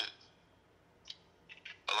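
A man's voice over a phone line: one word, a pause of about a second and a half broken by a few faint short sounds, then speech again near the end.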